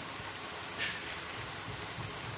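Chopped greens, onion and tomato sizzling in a frying pan: a steady hiss of frying, with one brief sharp sound a little under a second in.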